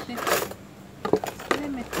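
A single light click of a kitchen knife against a plastic bowl about a second in, between a few spoken words.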